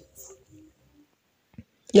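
A short pause in a man's speech: near silence with faint room tone and a single small click about one and a half seconds in, before the talk resumes at the very end.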